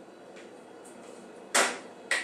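A ceramic baking dish is set down on the stove top with a single short knock about one and a half seconds in, after quiet room tone.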